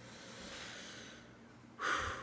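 A man's breathing: a soft breath, then a sharp intake of breath near the end.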